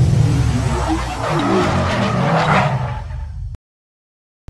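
Car sound effects for a logo animation, an engine revving and a tyre-spin whoosh, mixed with music. They cut off abruptly about three and a half seconds in.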